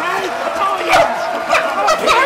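Men laughing hard, in short high-pitched bursts with a loud peak about a second in and more toward the end.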